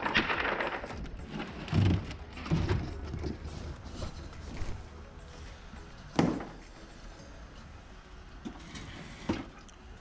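Wooden crate boards and cardboard packing being handled: a scraping rustle at first, then several knocks of wood being set down, the loudest about six seconds in.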